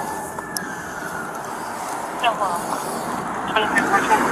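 Steady roadway traffic noise, with a sharp click about half a second in and two short, indistinct voice fragments in the second half.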